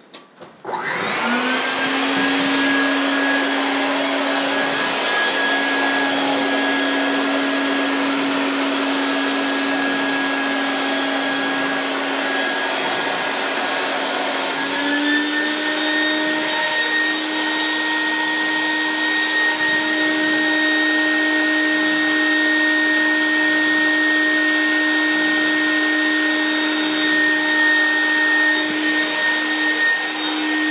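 Bucket-top shop vacuum switched on, whining up to speed and running steadily as the suction for a vacuum-forming table. About halfway through, its pitch steps up slightly and holds: the hot plastic sheet has sealed over the form and choked off the airflow, so the motor runs faster under less load.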